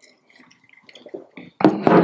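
Faint small knocks and clinks of ceramic mugs being sipped from and lowered to a table, then a voice starts near the end.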